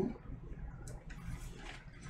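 Faint handling noise of a vinyl record jacket: soft rustling with one light click about a second in.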